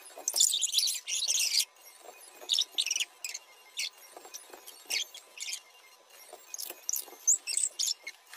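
Intermittent light rustling, clicks and small squeaks, with a longer crackly rustle in the first two seconds.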